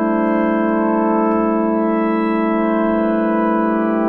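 Novation Peak synth pad chord held as a steady drone by the freeze mode of an Empress Echosystem delay pedal: one sustained chord, frozen, with no new notes or fades.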